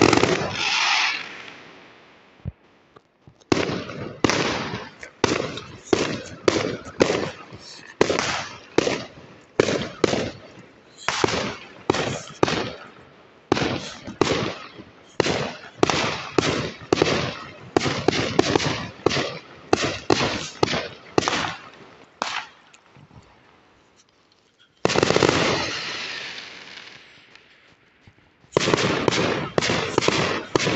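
Aerial fireworks going off. A big burst opens, then sharp bangs follow about two a second for nearly twenty seconds. After a short lull comes another big burst, then more rapid bangs near the end.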